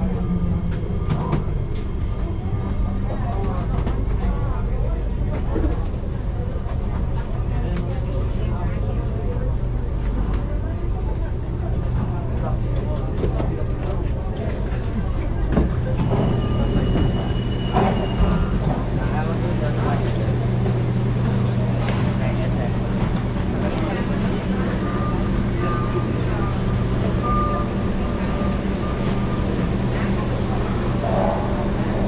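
Singapore MRT train at a station stop: the motor whine falls away as the train comes to a halt, then a steady low hum from the standing train. About halfway through the doors slide open with a brief high electronic tone, with people's voices in the background.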